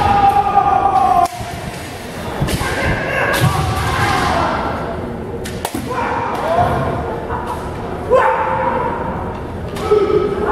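Kendo fencers' kiai: long held shouts, the first cut off sharply just over a second in, with more yells from the second half. A few sharp knocks and thumps from strikes and footwork on the wooden floor come in between.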